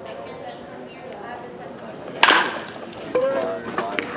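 A pitched baseball meeting bat or glove at home plate with one sharp crack about halfway through, followed by a short shout, over background chatter.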